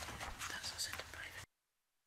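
Faint room noise with papers being handled and low murmured voices, then the sound cuts out completely about one and a half seconds in.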